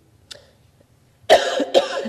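A woman coughing: two loud coughs in quick succession about a second and a quarter in, after a faint short sound near the start.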